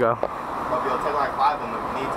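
Steady city street traffic noise, with faint voices in the background.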